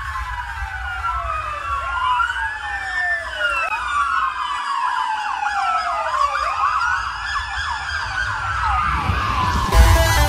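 Many overlapping siren wails, each rising and falling in pitch, layered over a low bass pulse in an electronic dance track. A loud hit near the end brings the full beat back in.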